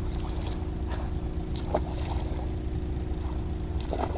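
Kayak paddle working in calm water: a few short, faint splashes and drips over a steady low hum and rumble.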